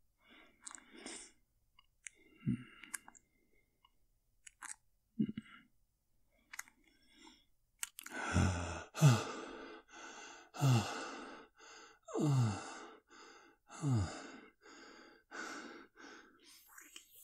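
A man's close-miked ASMR mouth sounds, acting out a vampire drinking from the neck: scattered short wet clicks and slurps for the first half. About halfway in come heavy sighing breaths with a falling voiced tone, about six of them, one every second and a half.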